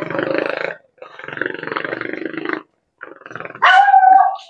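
A dog growling in two long rough growls, then a sharp bark near the end.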